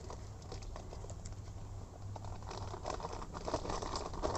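Soft rustling and small crackling clicks of strawberry plant leaves and stems being handled as a ripe strawberry is picked by hand, busier in the second half, over a faint low rumble.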